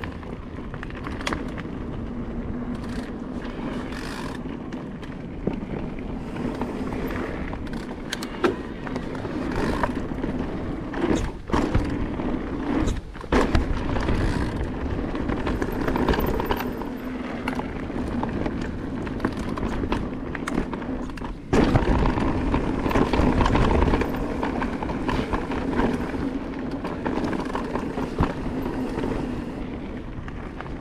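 Full-suspension e-mountain bike riding fast down a dirt trail: knobby tyres rumbling and crunching over the ground, with wind on the microphone and knocks and rattles from the bike over bumps. The noise drops out briefly twice near the middle and gets louder a little past two-thirds through.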